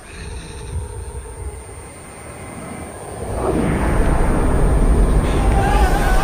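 A deep rumble from the trailer's soundtrack. It stays low for the first few seconds, then swells sharply about halfway through and stays loud.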